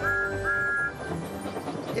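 Steam locomotive whistle giving two short toots, the second about half a second after the first, over background music.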